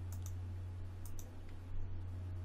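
Computer mouse button clicking: two quick pairs of clicks about a second apart, over a steady low electrical hum.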